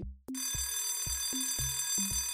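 Alarm-clock bell sound effect ringing steadily from about a quarter-second in, marking the countdown timer running out. Background music with a steady beat plays under it.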